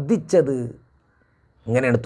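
A man speaking into a lapel microphone, talking in Malayalam, with a pause of under a second midway before he carries on.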